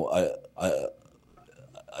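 A man's voice hesitating at a microphone: two short drawn-out 'a' syllables, then about a second of pause with only faint room noise.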